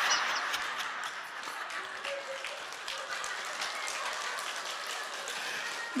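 A large audience laughing and clapping. Dense patter of many hands, loudest at the start, then settling to a steadier, lower level.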